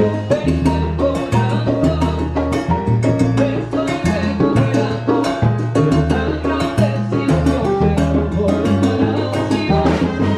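Live salsa band playing, with congas and timbales driving the rhythm over a moving bass line.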